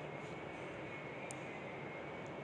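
Steady low background noise with a faint high whine running through it, and a faint tick a little past halfway: room tone.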